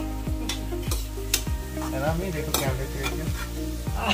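A metal spatula stirring and scraping peanuts frying in ghee in a steel kadhai, the hot fat sizzling, with repeated short scrapes against the pan.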